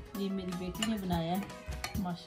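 Background music with a held, wavering melody, over a few light clinks and scrapes of a metal ladle against a glass serving dish as soup is served.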